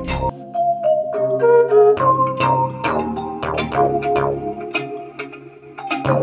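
A melodic sample loop playing back, with sustained pitched notes over a bass line. The bass drops out just after the start and comes back about two seconds in.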